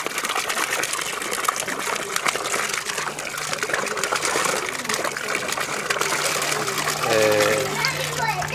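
Water from a hand pump's spout gushing and splashing into a metal tub, with voices joining near the end.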